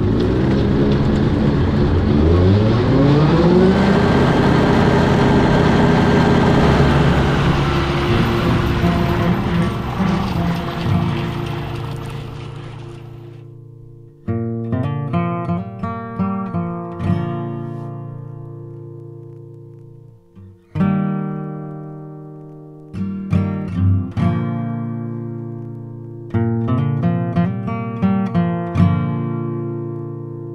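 A New Holland T2420 compact tractor's engine rises in speed over the first few seconds and runs steadily with its rotary mower, then fades out about 13 seconds in. From about 14 seconds, acoustic guitar music takes over: plucked notes with two short pauses.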